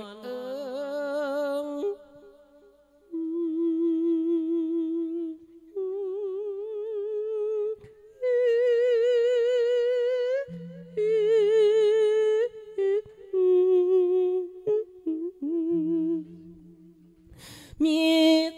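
A monk's voice singing the drawn-out melody of an Isan lae sermon: long held, melismatic notes with a strong wavering vibrato, in several phrases broken by short pauses.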